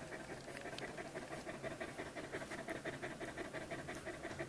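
An Australian Labradoodle mother dog panting with her nursing litter, a quick, even rhythm of faint breaths, several a second.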